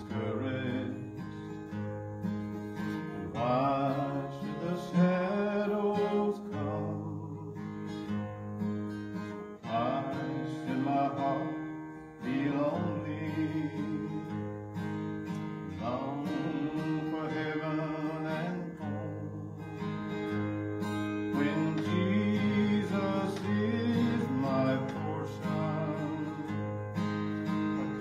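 Steel-string acoustic guitar strummed in slow, steady chords, with a man singing a gospel hymn verse over it.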